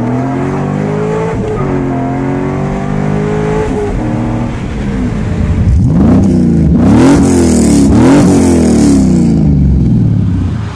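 A car engine running and revving, its pitch rising and falling for the first few seconds. About six seconds in it accelerates hard, the pitch climbing steeply and dropping sharply twice, like quick gear changes. This is the loudest part.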